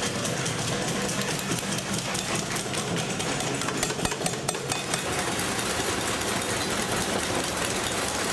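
Many cigar rollers rapping their chavetas, the flat curved tobacco knives, on wooden work tables in a fast, continuous clatter. It is the rollers' traditional applause: a sign of approval for the lector's reading.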